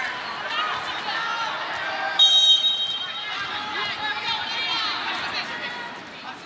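Volleyball arena crowd cheering and shouting between points. A referee's whistle sounds one steady, shrill blast of about a second a little before the middle.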